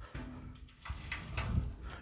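Phone handling noise: low rumbling and a few soft knocks as the phone is moved about close to a glass shower door.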